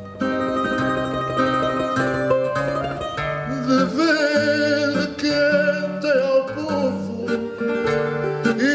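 Fado: a Portuguese guitar picking the melody over a viola de fado playing a stepping bass line, with a male voice singing with a wavering vibrato from a little before halfway.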